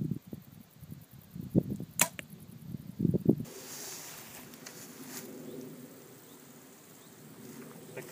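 PSE Dream Season Decree compound bow shot: a sharp release crack about two seconds in, with low thumps around it, the loudest a second later.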